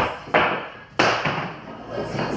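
Pool balls clacking on the table as a shot plays out: two sharp knocks about two-thirds of a second apart.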